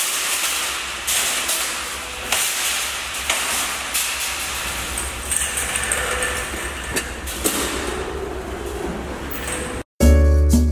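Metal wire shopping cart being pulled out of a nested row and pushed along, its basket rattling and clanking with a string of sharp knocks.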